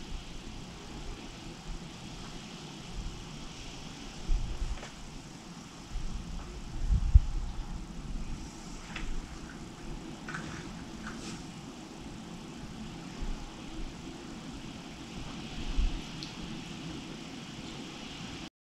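Quiet room noise with a few soft low thumps, the loudest about seven seconds in, and a few faint ticks, handling noise while a makeup sponge is dabbed on the face.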